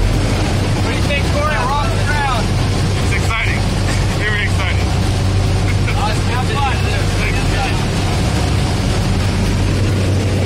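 Propeller plane engine droning steadily inside the jump plane's cabin during the climb, with voices raised over it in a few short stretches.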